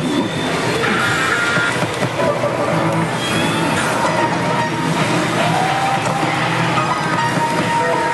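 Music and electronic sound effects from a Pachislot Hokuto no Ken: Tensei no Shō slot machine, over the loud, steady din of a pachinko parlor.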